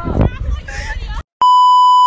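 Young people's voices and chatter break off about a second in, and after a brief dead silence a loud, steady electronic test-tone beep sounds for under a second. The beep is an edited-in transition effect that goes with a TV-glitch test-pattern graphic.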